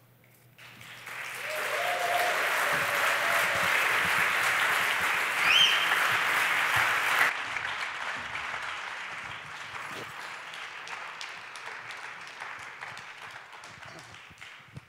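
Audience applauding at the end of a talk. It starts about half a second in, with a brief rising call over the clapping about five seconds in. It drops suddenly about seven seconds in, then carries on quieter and fades.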